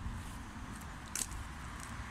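Wind rumbling on a phone's microphone outdoors, with one short faint click a little past halfway.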